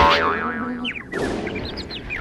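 Cartoon sound effects for a blow to the head: a sharp bonk, then a wobbling boing lasting about half a second. From about a second in comes a run of quick falling whistle-like chirps.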